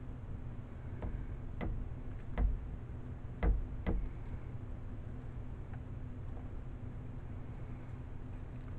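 A few light knocks and taps, about five in the first four seconds, as a silicone spatula scrapes soap batter off the metal head of a stick blender held over a plastic cup, over a low steady hum.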